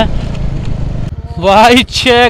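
Motorcycle ridden on a rough road: wind and tyre noise over a low engine hum, which drops about a second in to a steady low engine pulsing as the bike slows, with a man's voice near the end.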